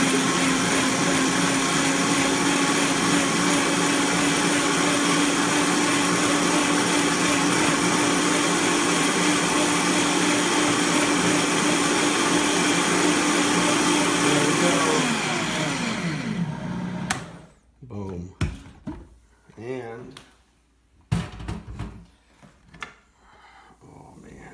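Countertop blender running steadily at full speed, grinding soaked sesame seeds and water into sesame milk. About fifteen seconds in it is switched off and winds down with a falling pitch, followed by a few scattered knocks and clatters.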